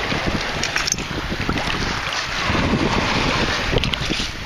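Shallow bay water sloshing and swirling around the legs of someone wading, with wind buffeting the microphone.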